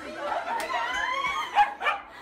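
A small dog barking twice in quick succession near the end, the loudest sounds here.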